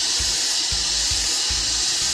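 A steady, even hiss like running water, over background music with a low pulsing beat.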